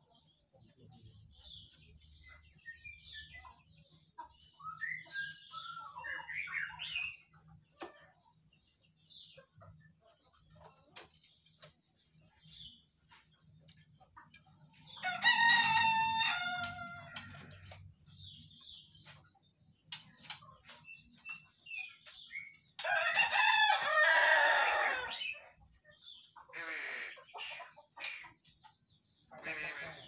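A rooster crows twice, each crow about two seconds long, the first about halfway through and the second a few seconds later. Soft, scattered bird chirps come earlier, over a faint low hum.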